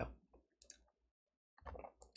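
Near silence with a faint click a little over half a second in: a computer click advancing the presentation slide.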